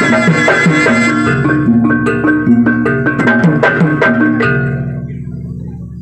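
Jaranan gamelan music: hand drum strokes under repeated pitched metal-percussion notes in a steady pattern. The music stops about four and a half seconds in, leaving a low ringing tone that dies away.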